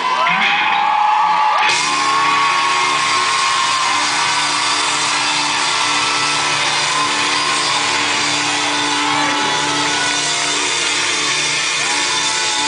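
Live rock band holding a sustained chord while a concert crowd cheers and screams, with shrill whoops rising above the noise.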